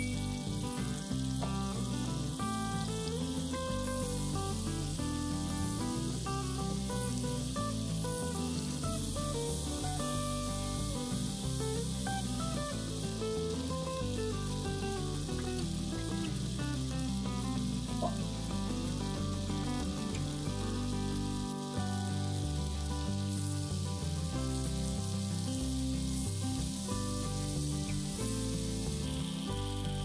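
Button mushrooms sizzling steadily as they fry in hot fat in a frying pan, with background music playing over the sizzle.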